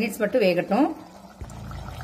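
A woman speaking Tamil for about the first second, then a quieter stretch in which a low steady hum comes in near the end.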